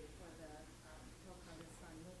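Faint, distant speech: a person talking away from the microphone, likely an audience member putting a question to the speaker.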